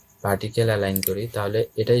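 A man's voice talking in Bengali, explaining a step, after a brief pause at the start.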